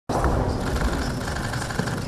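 A steady noise with a low rumble and no clear voices: the ambient sound of a large room.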